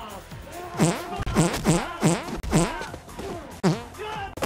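A quick run of about six dubbed-in fart sound effects with bending pitch, over music.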